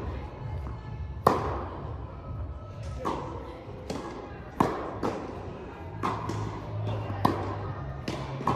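Tennis rally on an indoor court: a series of sharp racket strikes and ball bounces, the loudest coming about every three seconds, each echoing in the large hall.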